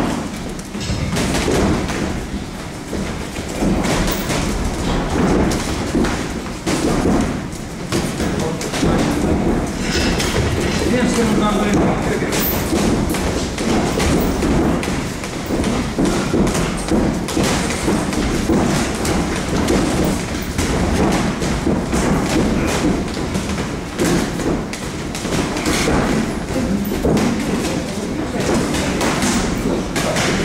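Boxing gloves landing punches during sparring: repeated, irregular thuds.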